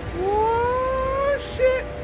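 Subaru Forester's rear hatch squeaking as it is lifted open: one long rising squeak of about a second, then a short second squeak near the end.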